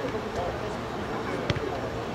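Distant spectators' voices over open-air noise, with a single sharp thud of a football being kicked about a second and a half in.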